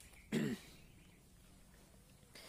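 One short vocal sound from a man about a third of a second in, a brief throat clearing. The rest is near silence.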